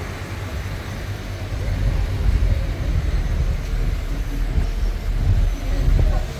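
Low, uneven rumble of a vehicle driving slowly, with its energy deep in the bass.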